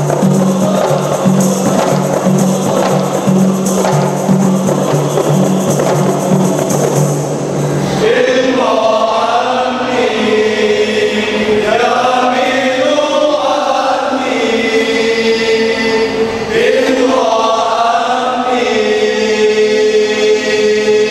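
A men's group singing a qasidah song to rebana frame drums beaten in a steady rhythm. About eight seconds in, the drums stop and the voices carry on alone in slow, long-held notes.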